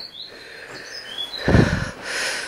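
A small bird chirping: several short, high chirps. About a second and a half in, a low thump.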